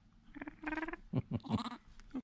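Young vervet monkeys calling: two short, wavering cries, then a run of quicker calls that fall in pitch near the end.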